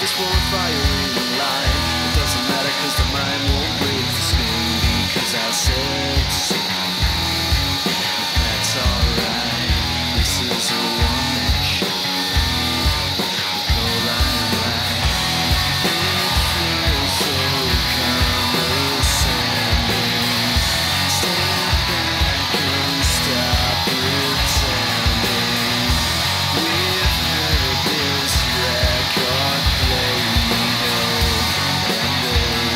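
Background rock music: an electric guitar track with a steady drum beat.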